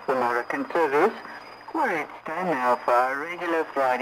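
A voice heard in a Radio Berlin International shortwave broadcast, with the narrow, thin sound of shortwave reception. A faint steady high whistle runs under it.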